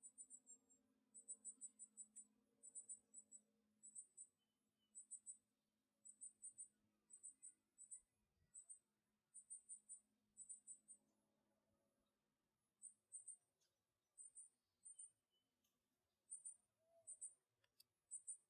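Near silence with faint, high-pitched insect chirping: short chirps in groups of three or four, repeating about once a second, with a short break about two-thirds of the way through.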